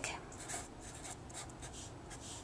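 Felt-tip marker writing on paper: a quick run of short, faint scratching strokes.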